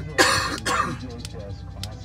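A person coughing twice in quick succession.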